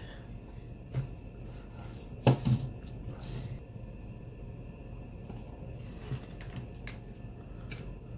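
A few soft, scattered taps and light knocks as trading cards are handled and set down on a wooden tabletop, over quiet room tone.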